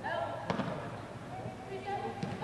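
Soccer players' short shouted calls and a sharp ball kick about half a second in, echoing in a large indoor sports hall.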